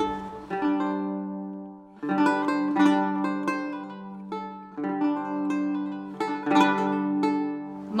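Instrumental music on a plucked string instrument: a slow melody of plucked, ringing notes over a held low note, in short phrases with brief pauses about two seconds in and again midway.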